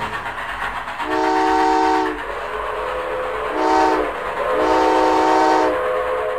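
Train sound effect: a multi-tone chord train whistle blows three times, long, short, long, over the steady rumble of a moving train.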